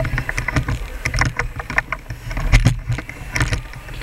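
Handling noise from a handheld camera being swung about: irregular knocks, clicks and low rumbling bumps on the microphone.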